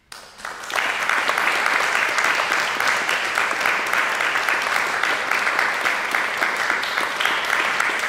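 Audience applauding: the clapping starts suddenly after a brief silence, fills out within about a second, and holds steady.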